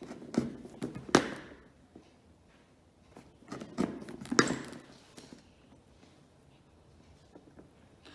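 A pointed poking tool punching holes through a paper template into the top of a cardboard box: two short runs of taps and thuds, each with one sharp pop, near the start and again about halfway through.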